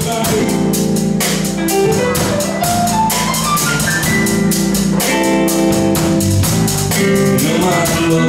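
Live blues band playing an instrumental passage on electric guitar, bass, drum kit and keyboard, with no vocals. A run of notes climbs in pitch about three seconds in.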